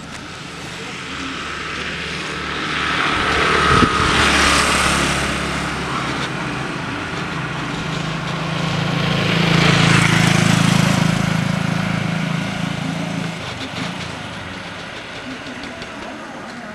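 Motor vehicle running along a road: a low engine hum with tyre and road noise, growing louder twice, about four seconds in and again around ten seconds in, then easing off.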